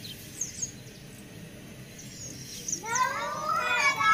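A few short, high bird chirps over a quiet outdoor background, then about three seconds in a group of children's voices calls out loudly together, their pitch rising.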